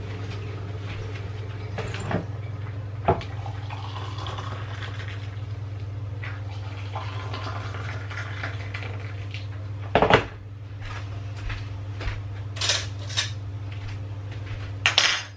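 Tea-making handling sounds in a small kitchen over a steady low hum: a kettle is handled, something is set down with a loud knock about ten seconds in, and a few light clinks of crockery follow.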